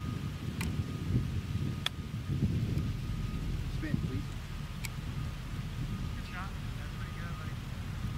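Wind noise buffeting the microphone, with a sharp click about two seconds in: a golf club striking the ball on a short chip shot. A few fainter ticks come before and after it.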